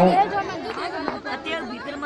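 Crowd chatter under the tent: several people talking at once, well below the amplified voice that frames it.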